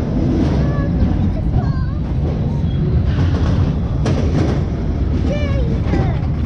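Reverchon spinning coaster car rolling along its track towards the lift hill, a steady low rumble throughout.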